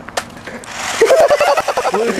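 A person's high-pitched warbling holler, loud and about a second long, rising out of a rush of noise; a few sharp clicks come just before it.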